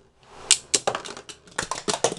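Two spinning Beyblade tops clashing in a clear dish stadium. From about half a second in there is a run of sharp, irregular clicks and clacks as they hit each other and the dish wall, coming thickest near the end as one top is knocked out.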